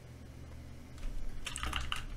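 Computer keyboard typing: a quick run of key presses, louder from about a second in.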